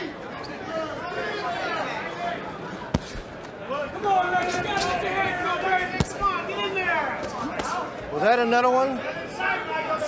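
Voices calling out at ringside, with two sharp smacks, one about three seconds in and another about six seconds in: boxing gloves landing punches.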